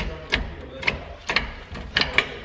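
An MGW short-throw shifter on a T5 five-speed gearbox being moved through the gears, with a sharp click each time it snaps into a gate, four clicks about half a second apart.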